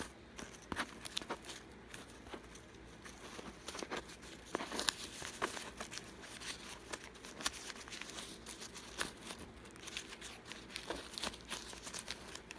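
Newspaper being crumpled and crimped by hand: a stack of glued newspaper circles scrunched up to form the petals of a paper flower, giving irregular small crackles throughout.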